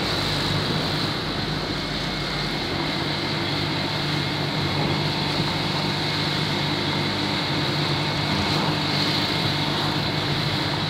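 Steady road noise from riding along a street: a vehicle engine hums at an even pitch under a continuous rush of noise, with no sudden events.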